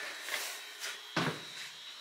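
Quiet room tone inside a small steel compartment, with a few soft knocks of footsteps as someone walks forward, one about a second in, and a thin steady high whine.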